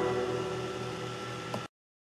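Last strummed acoustic guitar chord ringing out and fading, then cut off suddenly to silence near the end.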